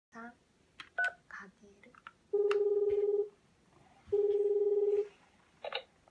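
Electronic toy telephone: a few short key beeps as its buttons are pressed, then two long steady electronic tones, each about a second long with a short gap between them, as the toy places its pretend call.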